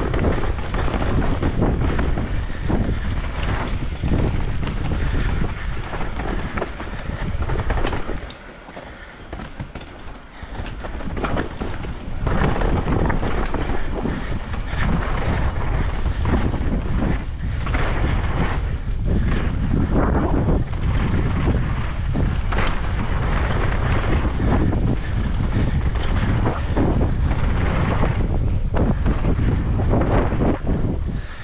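Wind rushing over the camera microphone and knobby mountain bike tyres rolling fast over a dry dirt trail, with the bike rattling and jolting over roots and bumps. It drops quieter for a few seconds about eight seconds in, then picks up again.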